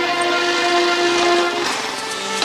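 Background film music: a sustained synthesizer chord held steady, changing to a new chord about one and a half seconds in.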